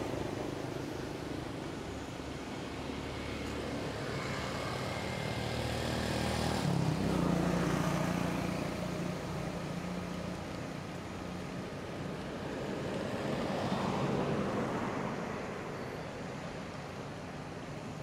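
Motor-vehicle traffic: a steady engine rumble that swells as a vehicle passes about seven seconds in, and again around fourteen seconds.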